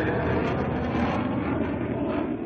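Steady jet noise heard inside a fighter jet's cockpit in flight.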